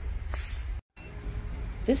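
Steady low hum of store ambience with faint background music. There is a short hiss about half a second in, then a split second of dead silence at an edit cut, and a woman's voice starts at the very end.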